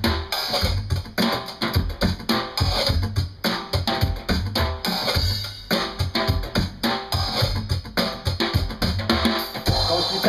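Drum kit played with sticks in a busy, steady rhythm, over a low bass line.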